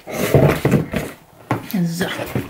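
Cardboard shipping box being handled and opened by hand: about a second of scraping and rustling of the cardboard, then a short lull.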